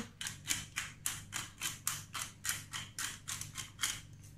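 Hand-held glass pepper grinder being twisted over a baking tray, grinding black pepper in a quick rhythm of crunchy rasps, about four a second, which stops near the end.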